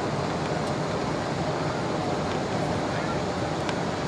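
Steady cabin noise inside a Boeing 747-8I on final approach with flaps extended: the even rush of airflow over the airframe and the hum of its GEnx engines, with no changes in level.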